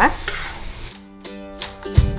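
Grated carrot and cabbage sizzling in a little oil as a metal spatula stirs them around a stainless steel kadai, with a sharp knock at the very end. Background music comes in about halfway.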